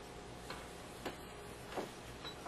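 Quiet room tone with a low steady hum and three light, irregularly spaced clicks or taps.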